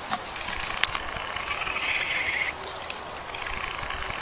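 Frogs trilling: a high, rapidly pulsing call in two long bouts, the second starting near the end, with a few soft clicks in between.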